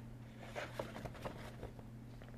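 Faint rustling and light taps of paper and craft supplies being handled on a table, over a steady low hum.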